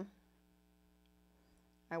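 Near silence: a faint, steady electrical hum in the room. A woman's voice trails off at the start and resumes at the very end.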